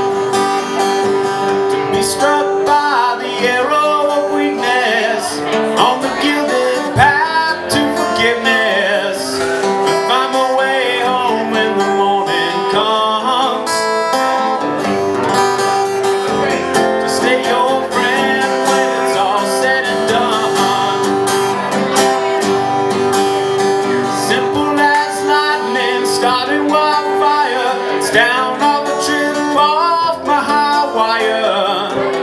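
Live solo acoustic guitar, strummed steadily with a held ringing note under the chords, and a man singing over parts of it.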